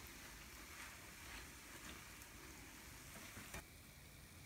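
Hot oil sizzling faintly around akara bean fritters frying in a pan. There is a single light click about three and a half seconds in, and the sizzle is quieter after it.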